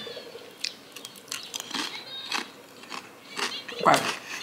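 Crunchy snack cluster being bitten and chewed: a string of separate sharp crunches.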